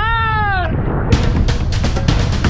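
A woman's high-pitched whoop, falling in pitch, over wind rushing on the microphone. About a second in, music with sharp percussive hits comes in.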